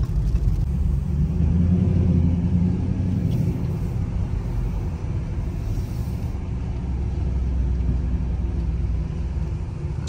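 Dodge Charger R/T's 5.7 L Hemi V8 heard from inside the cabin while driving slowly: a steady low drone that swells briefly a second or two in, then settles back.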